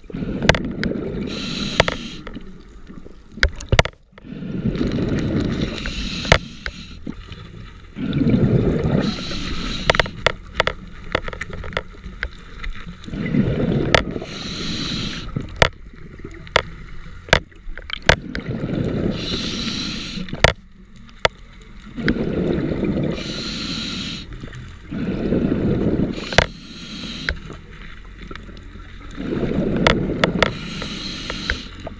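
A scuba diver breathing through a regulator underwater: a hiss on each inhale, then a low burst of exhaust bubbles on each exhale, repeating about every four seconds. Scattered sharp clicks run through it.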